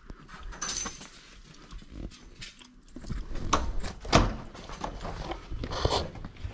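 Irregular knocks and scuffs of footsteps on block paving, mixed with handling noise from a hand-held camera being carried; the louder knocks come a few seconds in and near the end.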